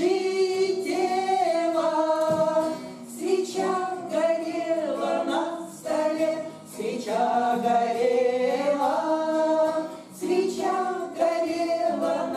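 A small group of women singing a Russian bard song together to an acoustic guitar, in sung phrases with short breaths between them about every three to four seconds.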